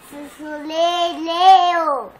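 A young boy singing long held notes that climb and then fall away as he finishes.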